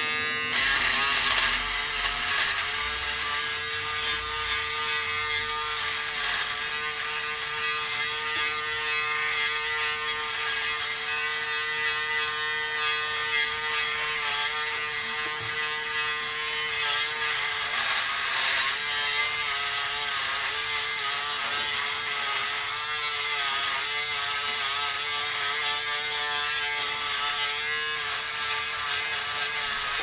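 Braun Series 5 5018s electric foil shaver running steadily against the face and neck, a constant motor hum. Louder scratchy stretches come as it cuts stubble, about a second in and again around eighteen seconds.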